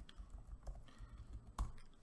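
Typing on a computer keyboard: a few separate key clicks, the loudest about one and a half seconds in.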